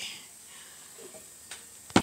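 Faint handling noise, then a single sharp knock just before the end.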